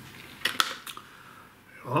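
Three short clicks from a metal steelbook case being slid out of its cardboard slipcover, between about half a second and one second in.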